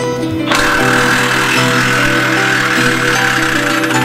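A cordless impact wrench runs on an exhaust bolt under a car, starting about half a second in and running on for about three seconds, loosening the old exhaust. Background music plays throughout.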